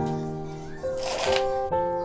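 Background music: a slow, gentle keyboard melody of held notes. A brief rustle about a second in.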